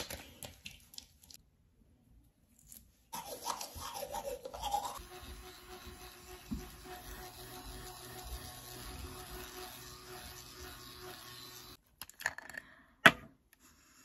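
Small electric facial cleansing brush buzzing steadily against the skin for several seconds, then cutting off suddenly. A few clicks follow, ending in one sharp, loud click.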